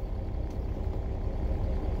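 A diesel engine idling, heard inside a semi truck's sleeper cab as a steady, even low rumble.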